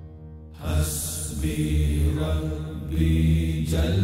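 Deep male voices chanting a Sufi zikr in long, low, held syllables. They come in about half a second in, after the ringing tail of the preceding music dies away.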